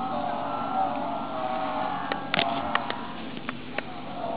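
A large group of children's voices singing in unison on long held notes, with a few sharp clicks in the second half.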